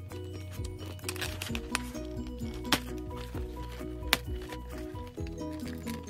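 Background music plays throughout, over a few sharp clicks of scissors snipping through a doll box's plastic packaging. The loudest clicks come a little under three and about four seconds in.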